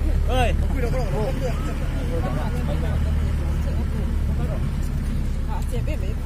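Mahindra Bolero pickup driving slowly over a rough dirt road: a steady low engine and road drone heard from the open cargo bed.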